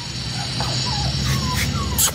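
Bhotia (Gaddi) puppies whimpering while held up: about four short, high whines, each falling in pitch, over a steady low rumble.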